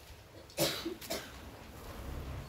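A person coughing: two short coughs about half a second apart, the first the louder.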